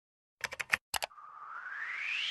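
Logo-animation sound effect: six quick clicks like computer keys or mouse clicks, four then two, followed by a whoosh that rises steadily in pitch.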